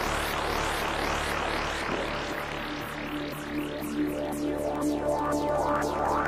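Electronic synthesizer background music with rapid, repeated rising sweeps. Steady held tones come in about halfway through.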